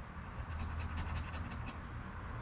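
A coin scraping the coating off a scratch-off lottery ticket in quick, faint, repeated strokes, over a low steady hum.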